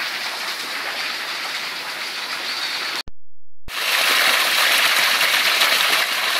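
Steady rush of a rocky jungle stream; after a short gap of silence about three seconds in, a louder gush of water as a three-inch PVC penstock pipe with about 125 feet of fall shoots a solid column of water onto the rocks.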